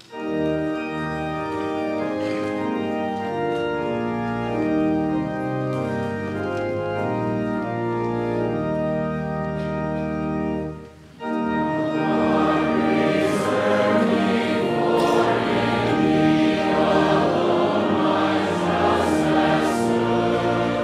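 Church organ playing sustained chords for about eleven seconds, breaking off briefly, then a congregation singing a psalm with the organ.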